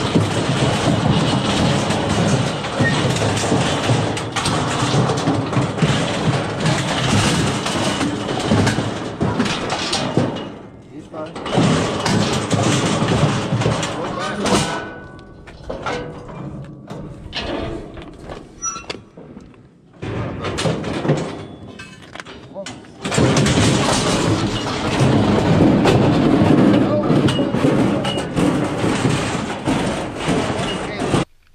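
Steel livestock squeeze chute and its gates rattling and clanging as a bison shifts and shoves inside it: long loud stretches of dense metal rattle, with a quieter stretch in the middle broken by separate knocks and clanks.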